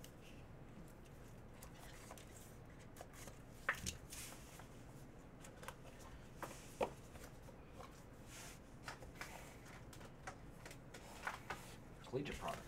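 Faint handling of a cardboard Panini Immaculate trading-card box and its cards: soft scrapes and a few light taps as the box is slid open and the card stack is taken out.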